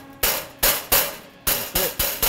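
A hand hammer striking a thin sheet-steel panel over a dolly, about five sharp metallic blows at an uneven pace. The blows flatten a fresh TIG weld seam to work out the warping that the heat put into the metal.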